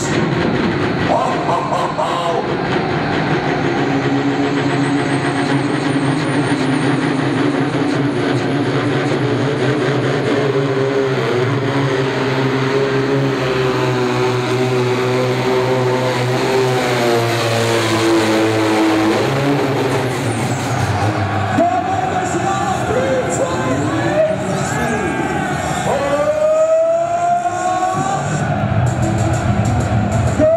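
Turbocharged diesel pulling tractor running at full throttle while hauling the weight sled, with a high turbo whine climbing over the first several seconds and then holding. The engine sound drops away about two-thirds of the way through, as the run ends in a full pull.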